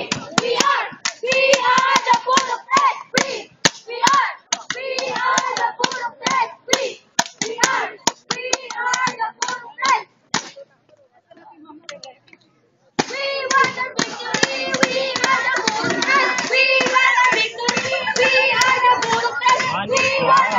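A cheering squad shouting a chant in unison, punctuated by many sharp claps. About halfway through it breaks off for a couple of seconds, then comes back as a loud, unbroken group chant.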